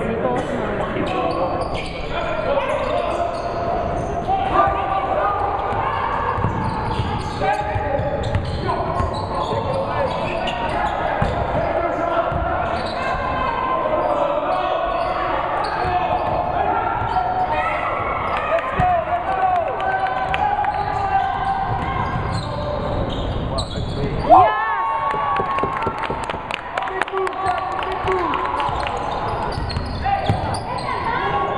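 Gym sound during a basketball game: a basketball bouncing on the hardwood floor and players' and spectators' voices echoing in the hall. There is one sudden loud sound about four-fifths of the way through.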